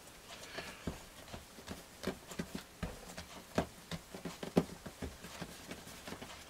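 Hands rounding a ball of soft bread dough on a countertop: faint, irregular soft knocks and pats as the dough is pressed and turned against the counter.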